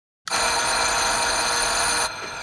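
An electric bell, sounded from a push button on a cord, rings steadily from about a quarter second in and stops abruptly.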